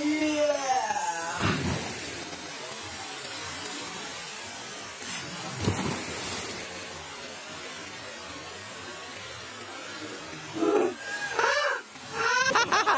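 People jumping into a clear river pool: a splash about a second and a half in and another, louder one around six seconds, over a steady hiss.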